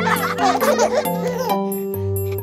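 Children's voices giggling and laughing over bouncy children's-song music, with the laughter in the first second or so.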